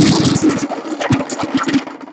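Plastic team chips rattling and clattering inside a plastic cup as a hand shakes and rummages through them to draw one. A dense rattle at first breaks within half a second into a run of separate clicks.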